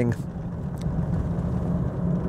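A truck being driven, heard from inside the cab: a steady low drone of engine and road noise.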